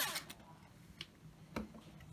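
A small quadcopter's motors whining, then dropping in pitch and stopping right at the start; after that a quiet room with two faint clicks about a second and a second and a half in.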